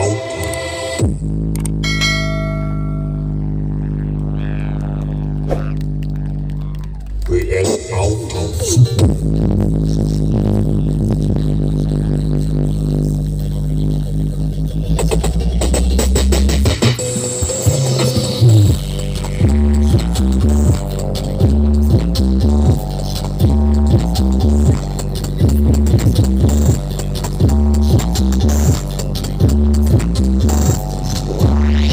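Giant outdoor sound-system speaker stacks playing electronic music at full check volume. For the first half a long, deep bass drone is held; from about twenty seconds in it changes to a pulsing, repeating bass beat.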